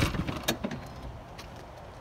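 Rear hatch of a 2006 BMW E53 X5 pushed shut: the thud fades at the very start, then a sharp click about half a second in and a few lighter clicks as the latch pulls the hatch down fully closed.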